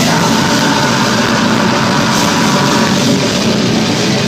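Brutal death metal band playing live at high volume: heavily distorted guitars and drums in a dense, unbroken wall of sound, with the vocalist growling into the microphone.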